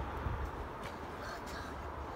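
Steady low rumble of ambient noise in a covered football hall, with a few faint knocks and distant voices.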